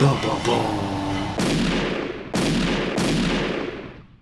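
Three heavy boom sound effects, each starting suddenly and fading out in a long tail, coming about a second apart after a spoken 'Boom'.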